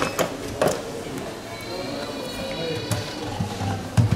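Hands handling a small cardboard box, with a few sharp clicks and a louder plastic knock at the end, over quiet background music.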